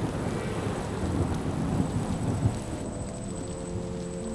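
Rain falling with low thunder. About three seconds in, the rain thins and soft sustained music notes come in.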